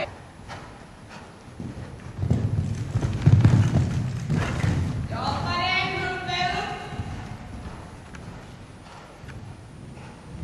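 Horse cantering on the sand footing of an indoor riding arena, its hoofbeats coming as dull, heavy thuds that are loudest a few seconds in and then fade as it moves away.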